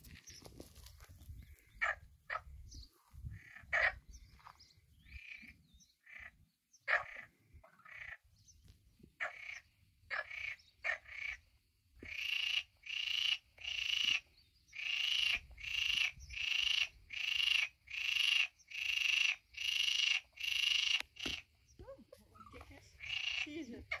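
Frogs croaking at a pond: scattered calls at first, then from about halfway in a steady run of calls, about one every 0.6 seconds, that stops a few seconds before the end.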